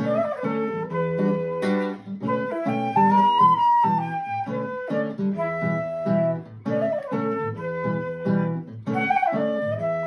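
Flute and acoustic guitar duet: the flute plays a melody with long held notes, rising to a higher held note near the middle, while the guitar plucks a steady accompaniment underneath.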